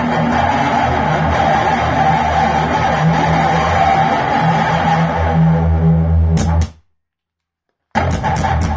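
Electric guitar played through an amplifier, a full rock sound with a heavy low end. It cuts off abruptly a little before the end, leaving about a second of dead silence before it starts again.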